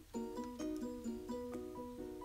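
Quiet background music: a light melody of short plucked-string notes.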